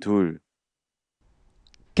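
A voice saying the Korean number ninety-two, 'ahun dul', which ends in the first half second, followed by near silence and a faint click just before the next word.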